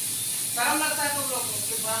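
A person talking in Hindi over a steady high hiss. A phrase runs from about half a second to a second and a half in, and another starts near the end.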